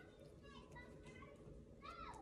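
Near silence: room tone with faint, distant high-pitched voices rising and falling.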